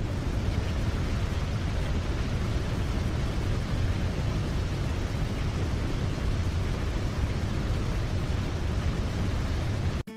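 Steady rushing noise, heaviest in a deep rumble, that cuts off abruptly at the end.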